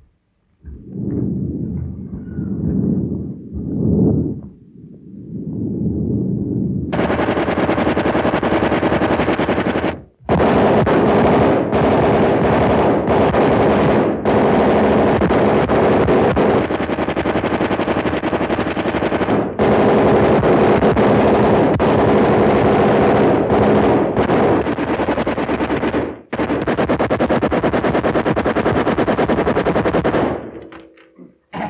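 Machine-gun fire in long, sustained bursts starting about seven seconds in, broken by several short pauses, on an early sound-film soundtrack. It is preceded by a few lower, muffled rumbling noises.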